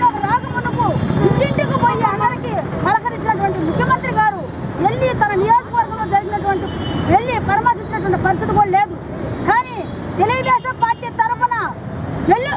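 A woman speaking loudly in Telugu without a break, over a steady low rumble of street traffic.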